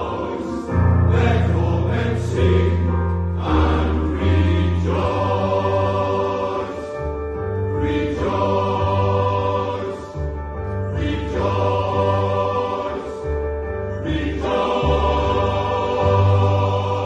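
Male voice choir singing in four-part harmony, loud and full, with strong low bass notes and held chords that change every second or so.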